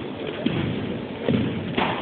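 Marching drill platoon's footsteps on a gymnasium's hardwood floor: a few heavy, echoing thuds over a steady din, with one sharper knock near the end.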